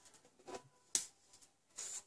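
Faint handling sounds of small stamped paper pieces being moved on a craft mat, with one sharp tap about a second in.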